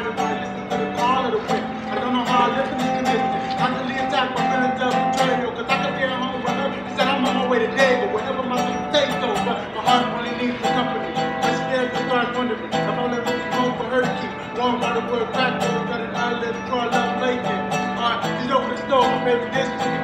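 Resonator guitar being fingerpicked, with a man singing over it.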